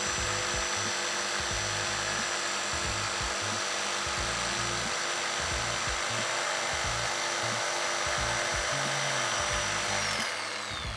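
DeWalt corded jigsaw running steadily as its blade cuts through a wooden board, with background music underneath.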